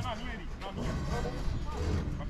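Several men shouting and calling across a football pitch during play, the voices overlapping and fainter than the shouts near the camera, over a steady low rumble.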